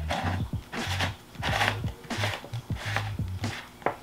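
Red plastic mushroom-shaped lid being pressed and fitted onto a round plastic bug-catcher jar: a run of small plastic rubs and clicks. Quiet background music with a bass line plays underneath.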